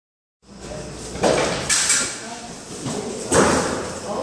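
A scuffle in a tiled hallway: a few sudden loud bangs and thuds that echo off the walls, about a second and a quarter in, just before two seconds and again near three and a half seconds, with voices in between. It ends with a man down on the floor.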